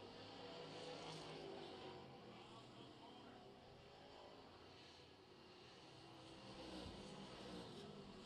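Faint, distant limited late model race car engines running around a dirt oval, their pitch drifting slowly up and down as the cars circle.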